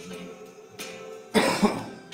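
A man coughing twice into his fist, two short harsh coughs close together over background music.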